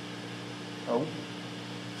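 Steady machinery and ventilation hum in a compressor room: a few low, constant tones over an even hiss.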